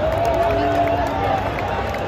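Football stadium crowd of supporters singing and chanting together, long held notes over the steady noise of the packed stands.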